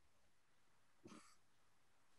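Near silence on a video call, with one faint, brief sound about a second in.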